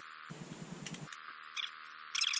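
A few scattered key clicks from typing on a laptop keyboard, over faint room hiss.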